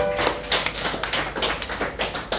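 Scattered, uneven hand-clapping from a small congregation as the song ends. A held accompaniment note stops just at the start.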